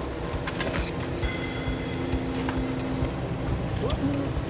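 Mechanical excavator's diesel engine running as it digs a trench with a toothless ditching bucket, with a steady whine for about two seconds in the middle.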